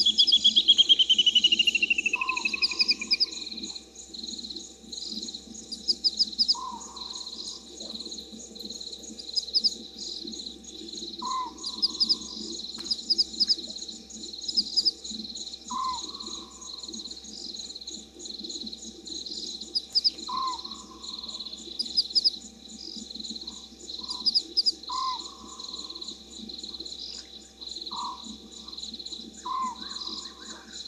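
Night-time bush chorus: insects chirp steadily and frogs call continuously, while a short lower call repeats about every four to five seconds. A loud trill falls in pitch over the first three seconds.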